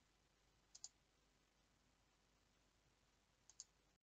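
Near silence: faint room tone broken by two faint double clicks, one about a second in and one near the end.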